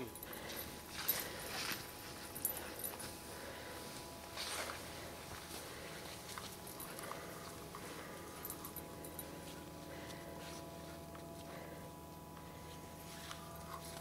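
Briards moving through deep snow and spruce underbrush: scattered soft rustles and crunches, a few louder ones in the first five seconds, then quieter.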